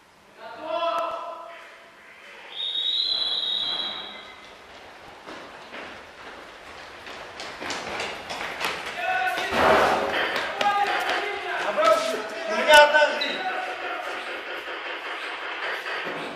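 Players' voices calling out, echoing in a large concrete hall, with an electronic beep held for about a second and a half about three seconds in. From about halfway through, a busy run of sharp knocks and thuds, the loudest a sharp crack near the end.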